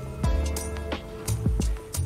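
Background music in a pause between spoken lines: sustained chords over a low bass, with a few short percussive hits.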